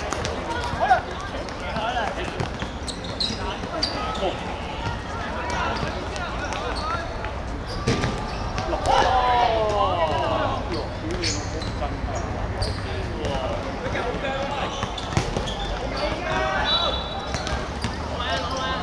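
A futsal ball thudding as it is kicked and bounces on a hard outdoor court, with sharp kicks about a second in, around eight seconds and around fifteen seconds. Players shout to each other in between, loudest just after the second kick.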